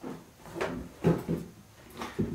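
A large cardboard model-kit box being handled and lifted off a wooden table: a handful of separate knocks and scraping rubs of cardboard on wood.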